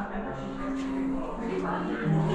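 A recorded soundtrack of music with long held low notes and a voice over it, as played in a dark walkthrough display.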